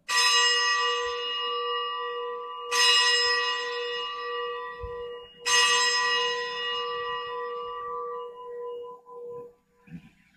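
A bell struck three times, a little under three seconds apart, each stroke ringing out and fading slowly. It is the consecration bell marking the elevation of the chalice at Mass.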